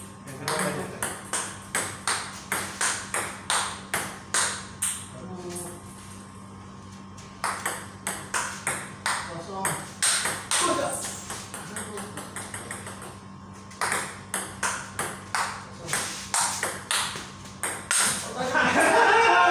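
Table tennis rally: the ping-pong ball clicking off the bats and the table in a quick, even rhythm of about two to three hits a second. Three rallies with short pauses between them.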